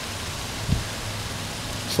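Steady hiss of outdoor background noise with a faint low hum underneath, and one soft knock about a third of the way in.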